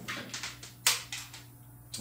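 Light knocks and clicks of a metal tripod being handled and set down on a desk, with one sharp, loud click about a second in as a small part drops.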